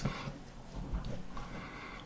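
A quiet pause between spoken lines: faint low room noise with no clear event.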